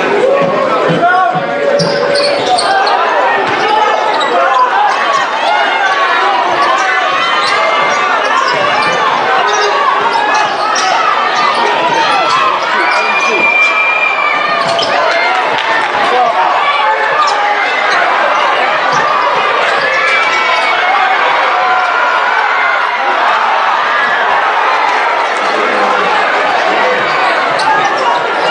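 Gym crowd chatter, many voices at once, with a basketball bouncing on the hardwood court.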